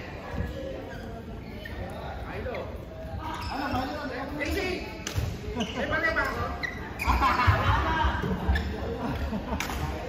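People talking and calling out in a large sports hall, with a few sharp knocks, about five and seven seconds in and again near the end.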